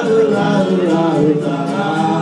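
Live acoustic trio playing: a sung melody line glides over guitars and upright bass, whose low notes pulse steadily underneath.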